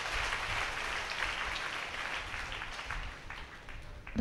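A large congregation applauding, many hands clapping together, the applause slowly dying away.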